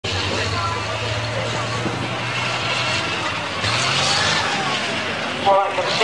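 Tiger I tank's V-12 petrol engine running as the tank drives, a steady low drone that picks up a little over halfway through. Speech starts near the end.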